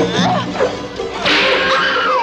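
Horror film soundtrack: eerie music under a woman's anguished screams, with a sudden loud rush of noise just over a second in.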